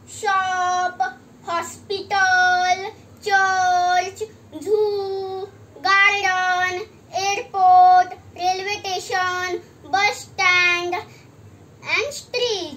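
A young boy singing unaccompanied, a string of held, steady notes with short breaks between phrases.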